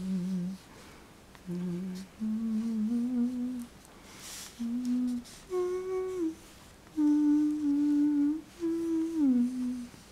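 A person humming a slow, wordless tune with closed lips, holding notes in short rising and falling phrases separated by brief pauses.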